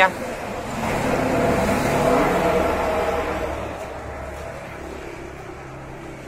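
A motor vehicle passing by: its engine and road noise swell to a peak about two seconds in, then fade away.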